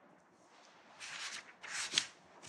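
Faint rustling, in two short bursts about a second in and near the end.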